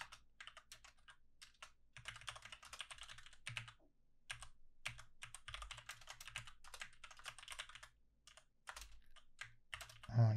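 Faint computer-keyboard typing: quick runs of keystrokes with brief pauses between them.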